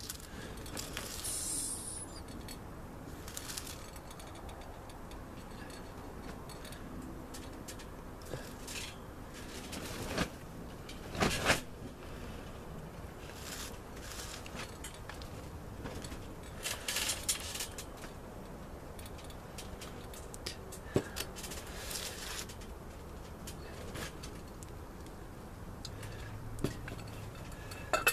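A glass swing-top jar clinking and knocking now and then as water is poured from it around a potted cutting, over a steady low hiss. The loudest knock comes about eleven seconds in.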